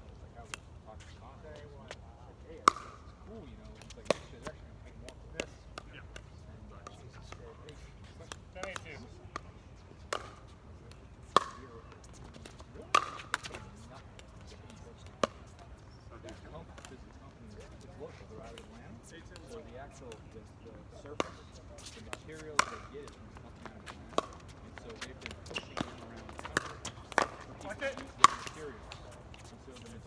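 Pickleball paddles hitting a plastic pickleball during a doubles rally: sharp, irregular pops a second or a few seconds apart, coming faster in the last several seconds.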